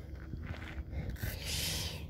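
A man breathing in audibly, a short hiss near the end, over low background noise in a pause between his words.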